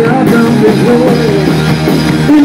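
Loud live rock band playing: electric guitar and drum kit, with a man singing into the microphone.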